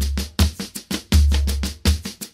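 Boi-bumbá toada opening on percussion alone: a deep bass drum booming about every second and a half, with quicker, sharper drum hits between the booms in a steady rhythm.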